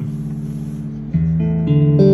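Electric guitar played through a 1963 Fender Bassman 6G6B tube amp. A held note rings, then a louder note is struck about a second in and another, louder still, near the end.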